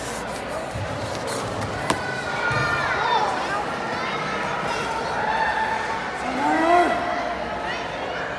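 Wrestling crowd hubbub: many voices talking at once, with several loud individual shouts rising over it in the second half, and one sharp click a little before two seconds in.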